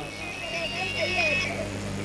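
Low steady electrical hum from the public-address microphone system during a pause in the speech, with faint voice-like sounds in the background.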